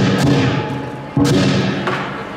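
Lion dance percussion: a big drum struck together with cymbals in a slow, even beat. One loud hit lands about a second in, and each hit rings out before the next.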